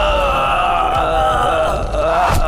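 One long, wavering, high-pitched vocal cry or wail from a cartoon character's voice.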